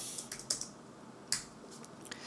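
A few separate keystrokes on a computer keyboard, sharp clicks with gaps between them, the clearest about half a second in and again a little past the middle, as a typed terminal command is finished and entered.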